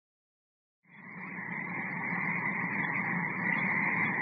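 Silence for about a second, then the steady hiss and light crackle of an old radio-show recording comes in, dull in tone and growing slightly louder.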